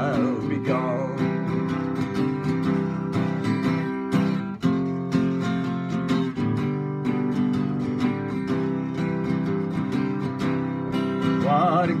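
Steel-string acoustic guitar strummed in a steady country rhythm through an instrumental break. A man's singing voice trails off just at the start and comes back in near the end.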